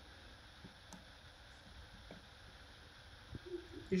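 Quiet room tone with a few faint, short ticks, about one a second: a knife being pressed down through a block of Comté held with a fork on a wooden board.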